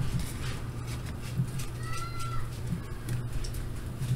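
Light rustling of a handheld paper sheet over a steady low hum, with a brief, faint, high call that rises and falls about halfway through.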